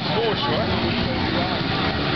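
Small moped engine running as a moped rides past, with people talking over it.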